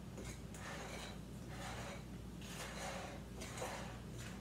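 Soft, irregular scraping and rustling of a utensil tossing moist shortcake dough in a glass mixing bowl, over a faint low steady hum.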